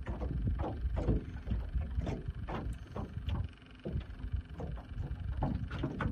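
Wind rumbling on the microphone, with irregular small splashes and knocks of lake water against the side of a small metal jon boat as a jugline is hauled in by hand. The wind eases about halfway through.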